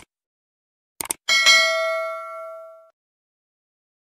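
Two quick clicks, then a bright bell ding that rings and fades out over about a second and a half: a subscribe-button and notification-bell sound effect.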